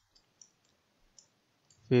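A few faint, scattered clicks from handwriting numbers on screen with a digital pen tool. A man's voice begins a word near the end.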